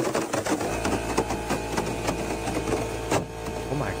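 A handheld metal stylus dragged along the surface of a surfboard, 'playing' it: a scratchy, rattling buzz with steady tones running under it.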